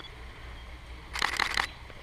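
A quick burst of camera shutter clicks, lasting about half a second, starting a little over a second in: a DSLR firing continuously to catch the shot.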